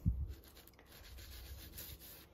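Green scouring pad of a kitchen sponge scrubbing a glass-ceramic cooktop coated in cleaning liquid, a steady rough rubbing. A brief low thump comes right at the start.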